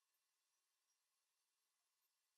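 Near silence: a pause in the music.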